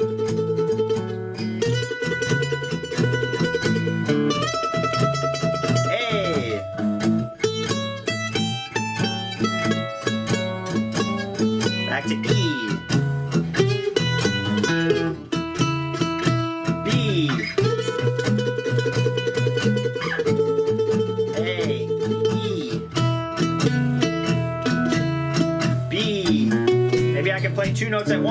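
Ellis F-style mandolin improvising a blues solo on chord tones, sliding into held notes, over a 12-bar blues backing track in E that keeps a steady low rhythm underneath.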